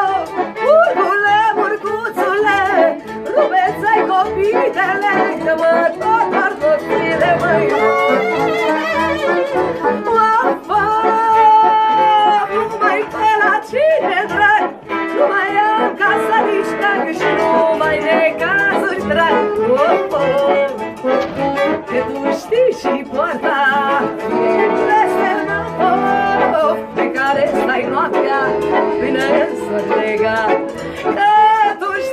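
Two accordions and a violin playing a Romanian folk dance tune without singing, the melody moving in quick runs over a steady, evenly pulsing accordion bass.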